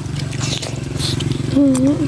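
A steady low buzzing drone runs throughout, with a short hummed voice sound near the end.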